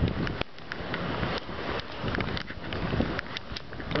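Wind buffeting the microphone as a steady rushing noise, with scattered light clicks through it.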